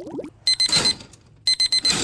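Electronic wake-up alarm beeping: two bursts of rapid high beeps, about a second apart.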